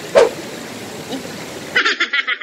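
River water running over rocks in a steady rush, with one short sharp yelp a fraction of a second in.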